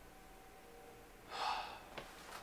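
Quiet room tone with a faint steady hum, then about a second and a half in a person lets out one short, breathy sigh.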